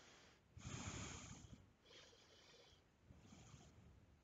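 Faint breathing through the nose: three soft exhalations, the first, about half a second in, the longest and loudest.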